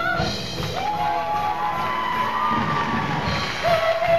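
Live musical-theatre band and cast singing. A held, wavering high vocal note ends just after the start, then the ensemble carries on over a steady drum beat, with shorter sung lines and some crowd-like shouting.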